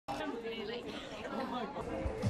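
Indistinct chatter: voices talking over one another, with no clear words.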